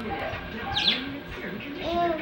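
Pet budgerigar chirping: a quick burst of high, falling chirps about a second in.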